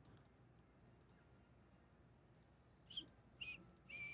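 Near silence for about three seconds, then three computer mouse clicks about half a second apart near the end, as the randomizer's button is clicked again and again.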